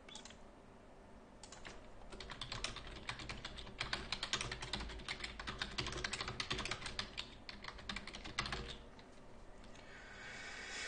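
Computer keyboard typing: a quick run of keystrokes that starts about a second and a half in and stops shortly before the end.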